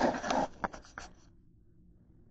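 Scratchy scraping and rustling on a kitchen counter with a few sharp clicks, stopping a little over a second in.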